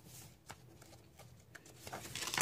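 Paper pages of a hardcover coloring book being turned quickly by hand: a faint paper rustle with a couple of light ticks, and a louder page swish starting near the end.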